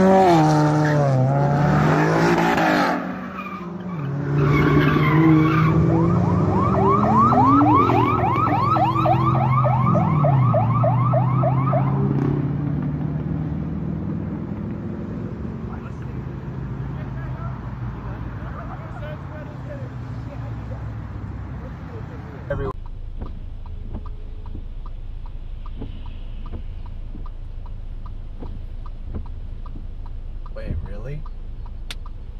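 A car engine revving hard, its pitch climbing and falling several times, with a rapidly pulsing tyre squeal over the middle of the first half. The engine then fades away. About three-quarters of the way through, the sound cuts abruptly to a quieter steady hum with faint, evenly spaced ticks.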